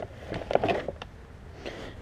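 Gloved hand scooping horse feed out of a feed bag in a plastic bin: a few short rustles and scrapes, mostly in the first second.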